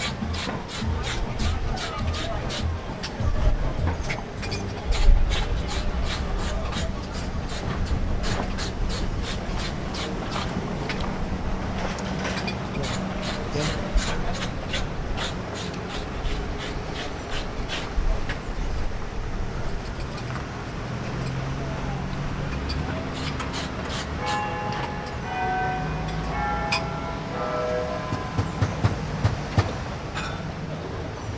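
Piragua vendor shaving a block of ice with a hand scraper: a long run of quick, evenly spaced scraping strokes, about two a second, over street rumble and voices. Near the end a few short pitched tones sound.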